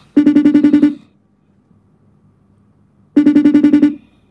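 Ringing tone of an outgoing phone call: two short bursts of rapid pulsed buzzing, the second about three seconds after the first, while the call waits to be answered.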